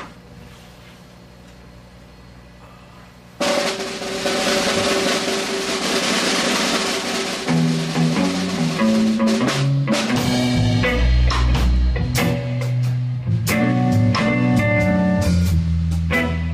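A live rock band with drum kit and electric guitars starts a song. Low amplifier hum for about three seconds, then a loud wash of cymbals and guitar cuts in suddenly, low guitar notes come in, and from about ten seconds in the full band plays with a thumping kick drum.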